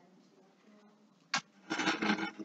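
Quiet classroom room tone with a faint hum, then a single sharp click a little over a second in and a brief rustling noise near the end.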